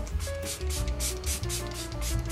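SHEGLAM Press Refresh makeup setting spray pumped several times in quick succession, a series of short misting hisses, over background music.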